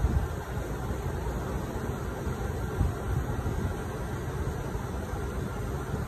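Steady low rumble and hiss of a Garland Xpress clamshell grill's gas burners firing on propane.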